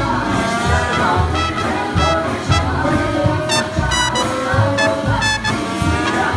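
Live swing big band playing, with the brass section carrying sustained horn lines over a steady beat.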